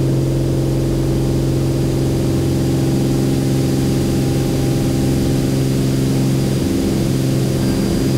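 Beechcraft A36 Bonanza's six-cylinder piston engine and propeller running steadily at high power for takeoff, a loud even drone heard inside the cabin.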